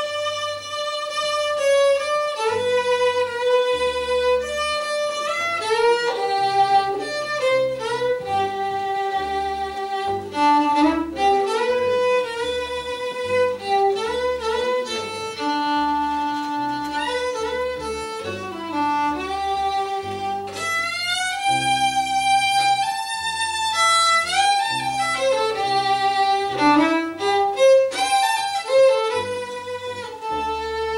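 Old-time Ozark fiddle tune played on a violin: a quick, bowed melody that keeps moving, with an electric bass playing low notes that change about every second underneath.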